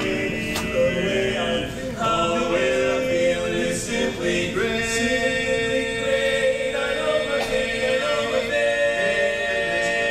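Male barbershop quartet singing a cappella in close four-part harmony. The chords shift every second or so, and one chord is held for about three seconds in the middle.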